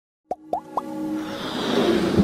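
Animated-intro sound effects: three quick plops, each a short blip gliding upward in pitch, followed by a rising swell over a held musical note that builds steadily louder.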